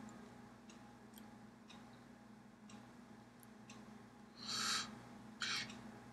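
Faint taps and clicks of hands and clothing from a person signing, with two short hissy swishes near the end, over a steady low hum.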